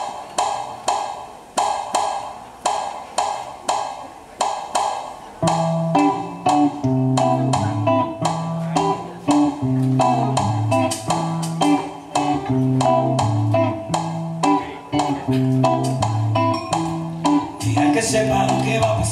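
Live electric guitar playing a repeated plucked figure, each attack left to ring and fade, at the start of a song. About five seconds in, low bass notes join and the rhythm fills out.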